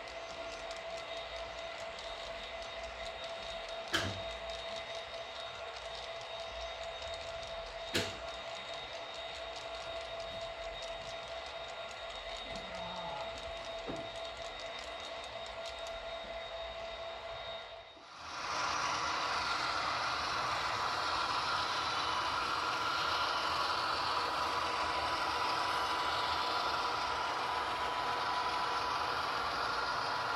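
HO scale model freight trains rolling along the track with a steady running noise and a thin whine, broken by a couple of sharp clicks. About eighteen seconds in, the sound cuts to another model train whose running noise is louder and fuller.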